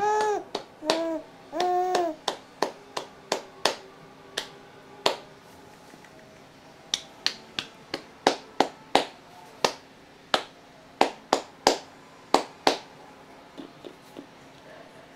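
A few short pitched voice sounds, then a long irregular string of sharp clicks, about one or two a second, made by a person off to the side of the baby.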